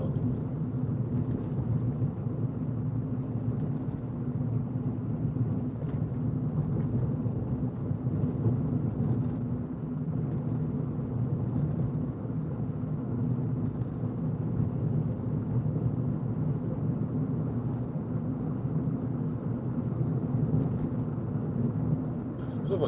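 Steady engine and tyre road noise heard inside the cabin of a moving car, a constant low rumble.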